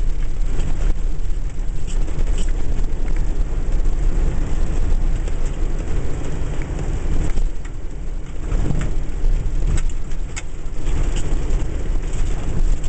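Flash-flood water rushing and churning across a desert wash: a loud, steady noise with a heavy low rumble underneath and scattered small ticks and spatters.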